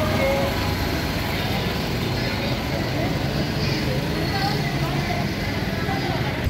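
Street crowd chatter with a vehicle engine running steadily underneath, the low hum of a slow-moving procession float.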